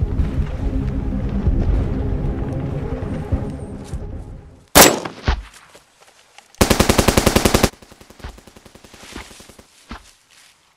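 Background music that stops suddenly just before the middle, followed by a single loud gunshot, and about two seconds later a rapid burst of automatic gunfire lasting about a second.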